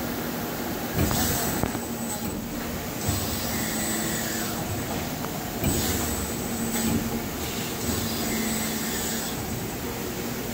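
Industrial machinery running on a shop floor: a steady mechanical hum with a faint high whine, broken by several brief rushing surges a few seconds apart.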